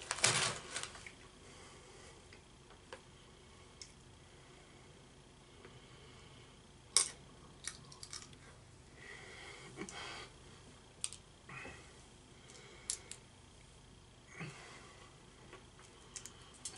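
In-shell sunflower seeds being cracked and chewed: a dozen or so sharp, faint clicks and cracks of shell at irregular intervals, with a brief rustle of the plastic snack bag at the start.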